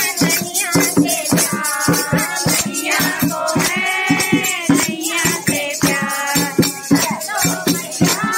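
A group of women singing a Hindi devotional song (bhajan) together, with hand clapping and a dholak drum keeping a quick, steady beat, about four strokes a second, and rattling percussion.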